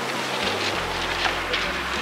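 Wind buffeting the microphone, a steady rush with an uneven low rumble.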